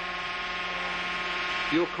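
Air-powered hydraulic unit of a tensile test machine starting up, a steady rushing noise with a hum that grows slightly louder as it gets going.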